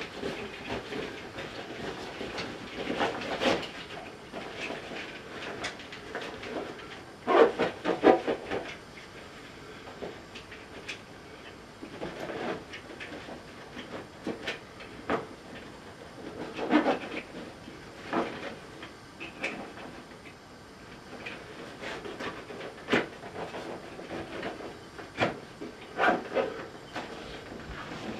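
Handling noise of a tripod being packed into its fabric carry bag: irregular rustling, clicks and knocks, with a louder cluster about a quarter of the way through.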